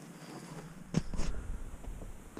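Footsteps on dry, crusted dirt with knocks from a handheld camera being moved, the sharpest knock about a second in, over a low rumble.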